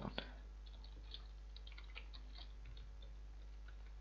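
Faint computer keyboard typing: a scattering of soft key clicks over a steady low hum.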